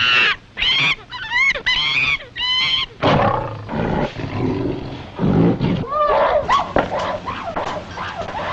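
Jungle animal sound effects on an old film soundtrack: a quick run of short, high-pitched screeching calls over the first three seconds, then lower, rougher animal cries and calls.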